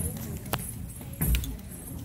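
A Bharatanatyam dancer's ankle bells jingle as she steps. There is a loud thud of a foot stamp on the stage a little over a second in.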